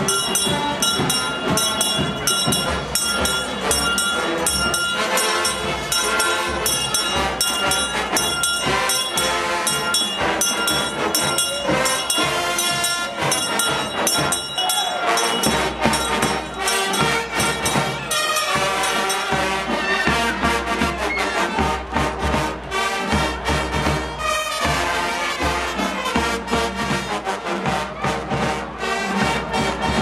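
Brass band with drums playing in a loud outdoor crowd, with a handbell shaken in quick regular strokes over the first half that fades out as the band carries on.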